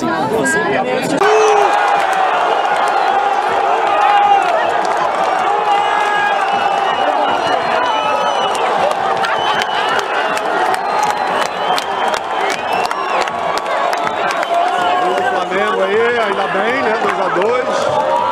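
Stadium crowd of football supporters, many voices shouting and chanting at once in a dense, continuous din that starts abruptly about a second in.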